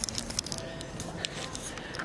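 Camera handling noise: a scatter of small clicks and rustles as a handheld camera is swung quickly around.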